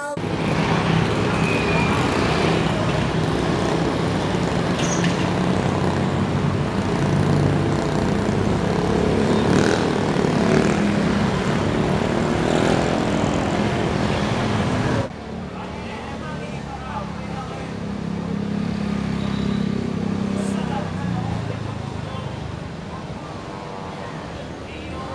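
Busy street traffic of motorcycles and cars moving past, with the hum of many engines and people's voices mixed in. About two-thirds of the way through it drops suddenly to a quieter level of the same mixed street noise.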